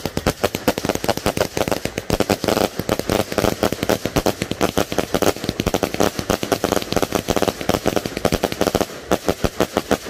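Fireworks barrage firing a rapid, continuous string of bangs and crackles as the shells go up and burst, with a short lull near the end.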